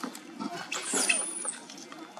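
Macaque giving a high-pitched squeal that falls in pitch, about a second long, in the middle.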